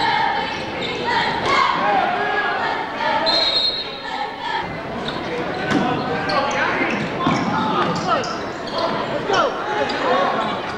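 Live high school basketball game in a gymnasium: the ball bouncing on the hardwood, short sneaker squeaks, and spectators' and players' voices and shouts, all echoing in the large hall.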